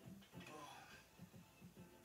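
Near silence: faint room tone, with a brief faint voice saying "Oh" about half a second in and a faint, irregular ticking underneath.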